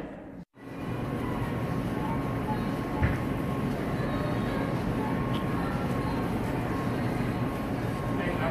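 Steady rumbling room noise of a cafeteria serving area, the hum of kitchen ventilation and equipment with a faint steady whine, starting after a brief gap. A single knock sounds about three seconds in.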